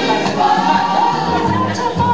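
Music with a group of voices singing together in a choir-like, gospel style.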